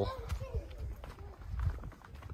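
Footsteps on sandstone slickrock, a few soft scuffs and thumps, over a steady low rumble of wind on the microphone.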